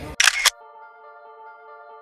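Video-editing sound effect: a short camera-shutter-like click, then a steady electronic chord held for about a second and a half before cutting off.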